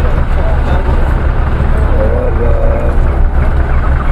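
Outdoor market background: a steady low rumble with faint voices talking in the distance about halfway through.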